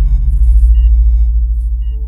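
Deep, steady low rumble of a CT scanner that starts suddenly, with a short two-note electronic beep about a second in and again near the end.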